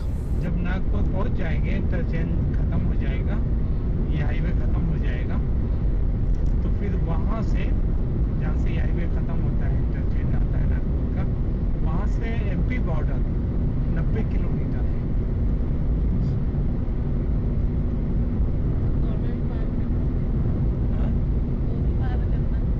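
Steady tyre and engine noise inside a car cruising at highway speed on a concrete expressway, a constant low drone with no change in pitch.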